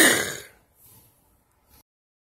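A man's short, breathy vocal burst right at the start, a laugh or throat-clear without voiced pitch, fading within about half a second. The rest is near silence.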